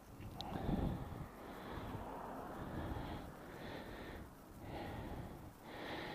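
Faint handling noise of hands turning the screw of a GoPro camera mount, with soft breathing close to the microphone.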